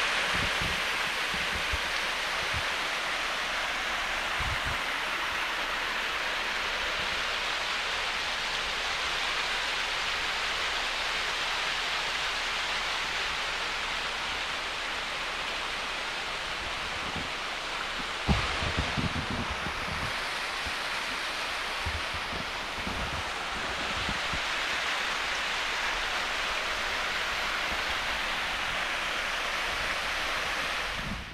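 Small waterfall rushing steadily over rocks into a mountain stream, a constant even roar of water. About two-thirds of the way through there is a brief low thump.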